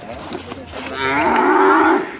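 Camargue bull giving one long, loud moo that starts about a second in and lasts roughly a second.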